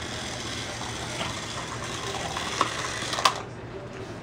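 Toy slot cars running on a plastic track: their small electric motors and gears whir steadily, with a few sharp clicks and knocks. The whir cuts off about three seconds in, just after the loudest knock.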